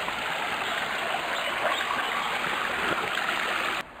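Water rushing steadily out of perched culvert pipes beneath a small weir on a chalk stream, falling into the scour pool below. The sound cuts off abruptly near the end.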